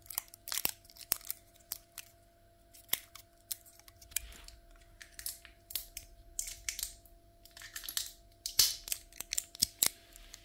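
Cardboard and paper packaging being handled: scattered clicks, taps and rustles of small card boxes and wrapping, louder and busier about two-thirds of the way through and again near the end. A faint steady hum underneath.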